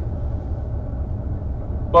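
A pause in speech with only a steady low room rumble, like ventilation or machine hum, running under it.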